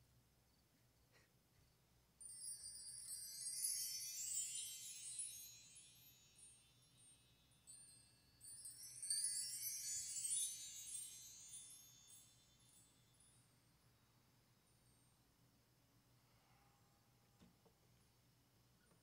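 Metal wind-chime rods jingling and ringing in two runs, the first starting about two seconds in and the second about eight seconds in, each a cluster of high bright tones that rings out and fades over several seconds.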